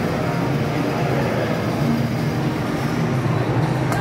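Battery-powered ride-on toy jeep driving along, its electric motors and gearboxes running in a steady low drone as its wheels roll over a tiled floor.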